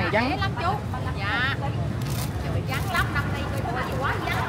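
Voices talking in short stretches over a steady low rumble of motorbike and street traffic.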